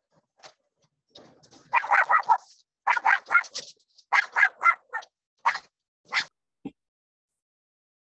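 A dog barking through a participant's open microphone, in quick runs of short yaps for about four seconds, starting a couple of seconds in.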